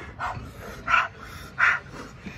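A person panting hard through an open mouth: three sharp, breathy breaths about three-quarters of a second apart, from the burn of an extremely hot chili chip.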